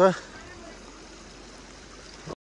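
Small mountain stream running over stones: a steady, even rush of water.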